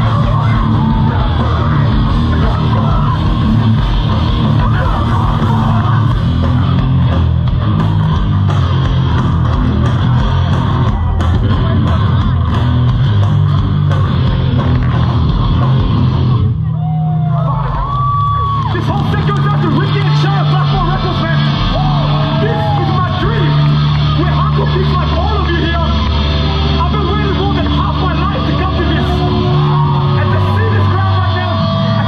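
Hardcore punk band playing live through a large outdoor PA, heard from inside the crowd: fast drums and distorted guitars with shouted vocals and crowd yells. About halfway through the drums stop and the guitars hold long low chords with bending notes over them.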